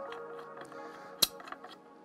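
Soft background music, with a single sharp metallic clink just past a second in as a steel bolt goes into the aluminium top-mount plate of a hydrofoil mast.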